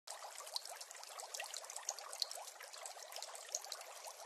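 Faint trickling-water sound, many small bubbling chirps and ticks over a thin hiss with no low end.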